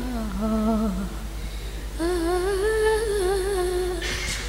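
A woman singing an unaccompanied, ornamented Arabic-style sholawat melody into a microphone: one long phrase slides downward and ends about a second in, and a new, higher phrase begins about two seconds in, held with wavering melismatic turns. A steady low electrical hum sits underneath.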